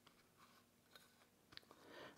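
Near silence: room tone, with two faint brief clicks, about a second in and about a second and a half in.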